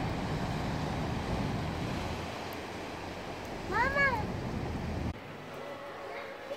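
Sea waves washing and breaking on a rocky shore, a steady rushing noise. About four seconds in, a single short call rises and falls in pitch over it. About five seconds in it cuts off suddenly to quieter indoor shop background.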